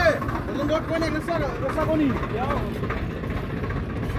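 Tractor diesel engine running steadily in a low, even pulse, with men's voices talking over it.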